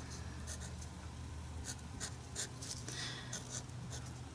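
Permanent marker writing letters on gesso-coated paper: a run of short scratchy strokes, rough on the gritty surface. A low steady hum runs underneath.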